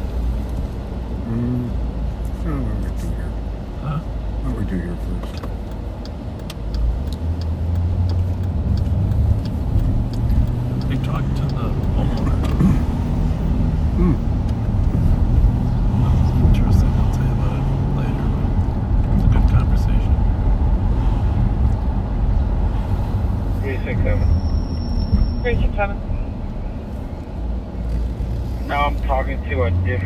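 Car engine and road noise heard from inside the cabin while driving: a steady low drone that grows louder about seven seconds in. A brief high beep sounds about three-quarters of the way through.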